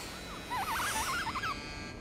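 Cartoon electronic sound effect of a hovering camera drone: a rapid robotic warbling chirp that swings up and down in pitch for about a second.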